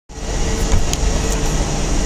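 Steady low rumble of vehicle traffic.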